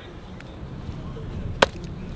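One sharp hand slap about one and a half seconds in, a palm striking a player's chest.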